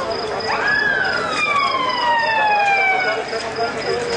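Emergency vehicle siren wailing. Its pitch rises quickly and then falls slowly over about two and a half seconds.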